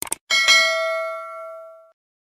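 Subscribe-button sound effect: a couple of quick clicks, then a single bright bell ding that rings out and fades over about a second and a half.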